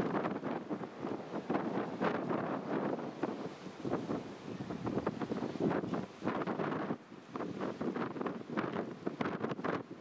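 Wind buffeting the microphone in irregular gusts, a rough rumbling noise that rises and falls.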